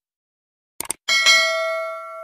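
Subscribe-button animation sound effect: a quick double mouse click a little before one second in, then a bell ding that rings on and slowly fades.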